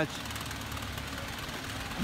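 A steady, low mechanical drone like a running engine.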